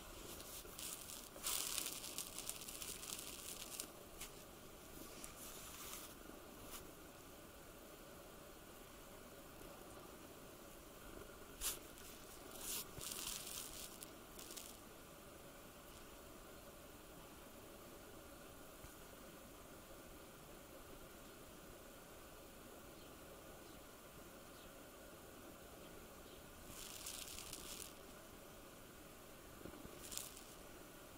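Quiet room tone broken by a few short bouts of rustling: one about a second and a half in, another after about twelve seconds, and a brief one near the end. A single sharp click comes just before the middle bout.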